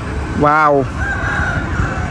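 A single short exclaimed "wow" from a man's voice, rising then falling in pitch, about half a second in. A faint high held note follows, over a steady background hiss.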